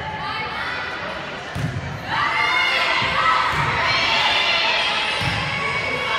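High-pitched shouting and cheering from girls and spectators in a gymnasium during a volleyball rally, swelling about two seconds in. A few dull thuds from the play sound under the voices.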